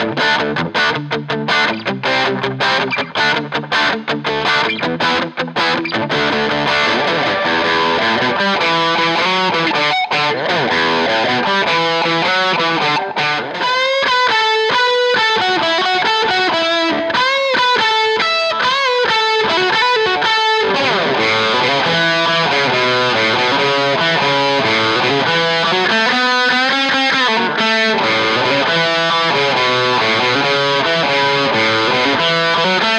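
Electric guitar, a 2017 Squier Bullet Stratocaster HSS, played with overdrive: short, choppy strummed chords for the first few seconds, then sustained riffing with single-note lines.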